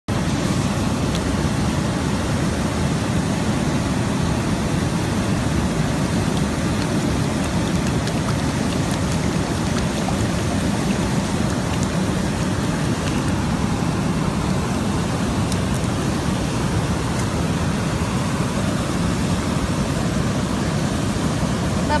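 Steady rushing of a wide waterfall, a constant even noise with no breaks.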